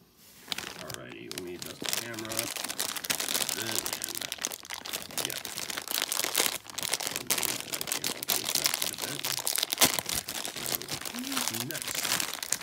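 Crinkling and tearing of a Funko Mystery Minis blind box and the foil wrapper inside, opened by hand. The rustling starts about half a second in and runs on with many sharp crackles.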